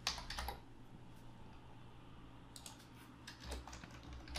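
Faint typing on a computer keyboard: a quick run of keystrokes at the start, then a few scattered key presses in the second half.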